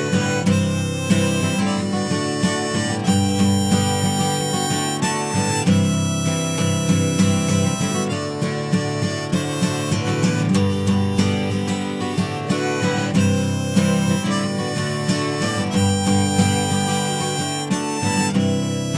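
Instrumental break of a folk song: harmonica playing the melody over acoustic guitar.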